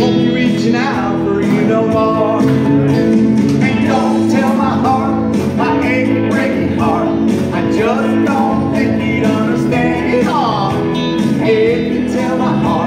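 Live country song: an electric guitar played over a backing track with a steady drum beat, and a man singing.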